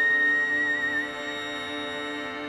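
Slow string music: a high held note that wavers slightly, over steady lower held notes from viola and cello. The high note fades away about a second in, leaving the lower notes sounding.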